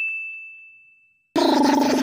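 Cartoon 'idea' ding sound effect, a single bright bell-like tone fading away over about a second as a lightbulb appears. About a second and a half in, a loud buzzing sound effect cuts in.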